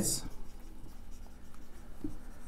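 Marker pen writing on a whiteboard: faint, short scratchy strokes as letters are drawn.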